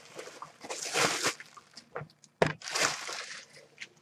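Clear plastic packaging bag crinkling and rustling in two bursts as it is pulled open and a hoodie is taken out, with a few small clicks in between.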